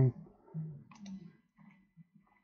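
A single sharp computer mouse click about a second in, with low muttering around it.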